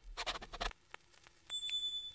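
Scratchy writing sound effect under animated handwritten text, followed by a short, high, steady beep about one and a half seconds in.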